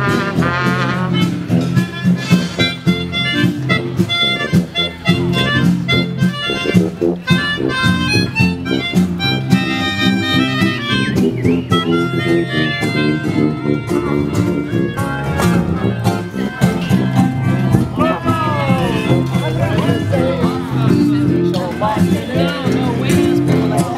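A street brass band playing a lively tune: a sousaphone carries a steady bass line under trumpets and trombones.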